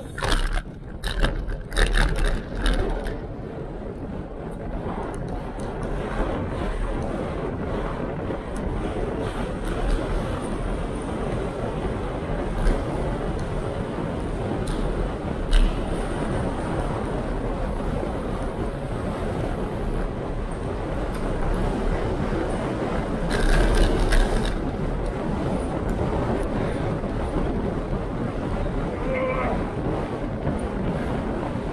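Steady wind rush over the microphone of a handlebar-mounted action camera, with road noise from a bicycle being ridden. There is a cluster of knocks and rattles in the first few seconds, a single sharp click about halfway through, and a louder burst of rush a few seconds before the end.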